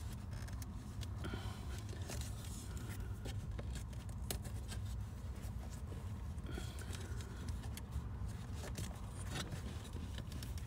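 Hands handling wiring and plastic trim behind a minivan's glovebox: scattered small clicks, scrapes and rustles of wire and connectors, over a steady low rumble.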